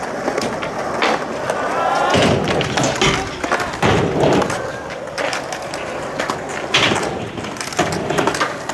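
Skateboard wheels rolling steadily over concrete, with many short knocks and clacks from the board along the way.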